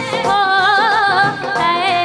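Live Punjabi song amplified over a stage PA: a singer holds long, wavering notes with wide vibrato over a steady drum beat.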